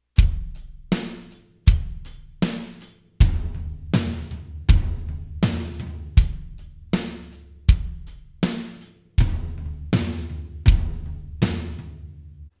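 Drum kit playing the basic beat with the right hand playing eighth notes on the floor tom instead of the hi-hat: kick on one and three, snare on two and four, at a slow steady tempo of about 80 beats a minute. The floor tom rings on under the strokes, giving the groove a powerful feel.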